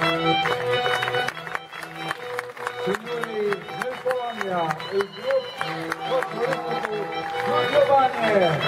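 A Polish folk ensemble's live band playing, led by held accordion notes. About three seconds in, voices join in over the music, rising and falling in pitch.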